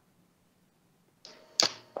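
About a second of near silence, then the hiss of a remote guest's Skype audio line coming in, a sharp click, and the guest's voice starting through the call.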